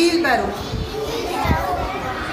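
Young children's voices chattering and calling out in a room, with a dull bump about one and a half seconds in.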